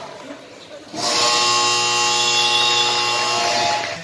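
Basketball game buzzer sounding one loud, steady blast of nearly three seconds, starting about a second in, marking the end of a period of play.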